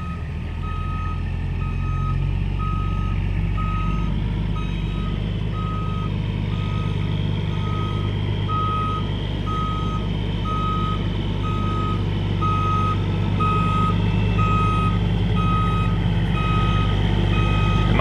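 Reversing alarm on a diesel semi-truck beeping steadily about once a second as the rig backs up, over the steady low drone of its engine.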